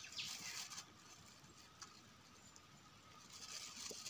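Near silence: faint outdoor ambience, with soft high rustling in the first second and again building near the end.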